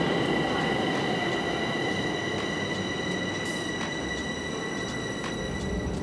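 Metro train running into the station: a steady rumble with a high-pitched wheel squeal held throughout, which fades out near the end.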